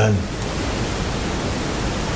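Steady, even hiss of background noise with no other sound in it, after the last syllable of a man's word right at the start.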